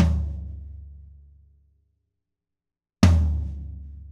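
Two single strikes on a maple floor tom fitted with gaff-taped cymbal-felt gates on its batter head, about three seconds apart. Each is a deep, low drum tone that rings out and fades over more than a second.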